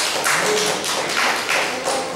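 A group clapping in a steady rhythm, about three claps a second, loud and close.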